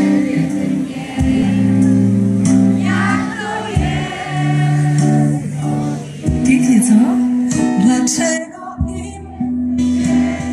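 Live band music through an outdoor concert sound system, a slow song with held keyboard and bass notes, and many voices of the audience singing along with the singer.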